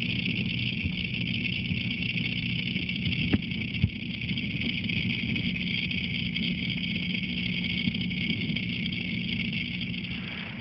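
Steady machine hum with an even hiss over it, heard with the microphone under water in a fish tank. Two brief clicks come about three and a half seconds in.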